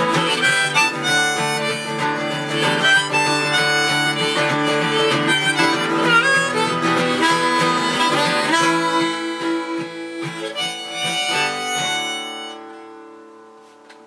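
Harmonica playing a melody over strummed acoustic guitar in the song's closing bars. The playing stops about twelve seconds in and the last guitar chord rings away.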